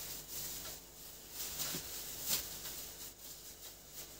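Faint rustling and crinkling of a plastic bag of cottage cheese being handled and packed, with a few soft knocks.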